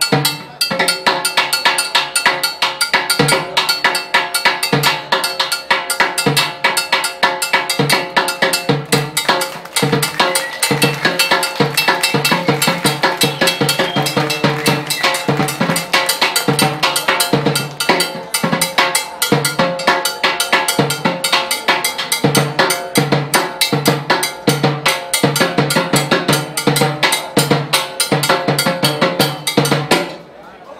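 Solo on chrome-shelled timbales and their mounted block, played with sticks in fast, dense strokes with the metal shells ringing. The playing stops suddenly at the very end.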